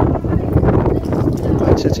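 A rapid, irregular clatter of loud knocks, with possible voices under it.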